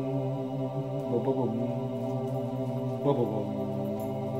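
A low, steady, chant-like droning hum that holds one pitch throughout, with brief wavering slides about a second in and again near three seconds.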